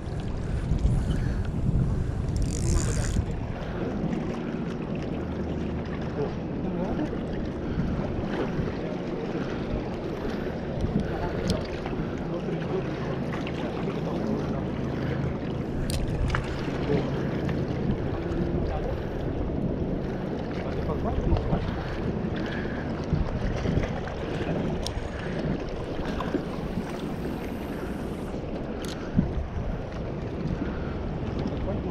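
Wind buffeting the microphone over water washing against shoreline rocks, a steady noise with a faint low hum under it. A few sharp clicks stand out, one about halfway through and one near the end.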